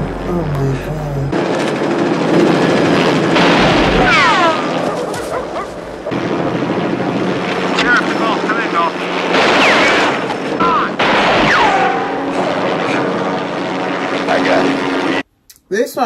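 Action-film soundtrack: a helicopter running close by with gunshots among it, and a sharp cut to near silence near the end.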